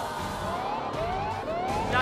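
A siren-like tension sound effect: a rising tone that repeats about four times, each sweep starting soon after the last.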